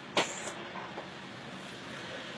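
Hands slapping together once while signing, a sharp smack shortly after the start, over steady background noise.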